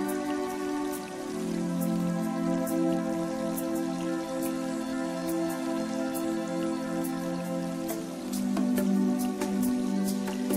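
Soft background music of sustained, held chords that change about a second in and again near the end, with light, sharp clicking notes scattered over them.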